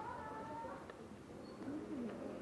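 Bird calls: a short held note in the first moment, then low cooing near the end.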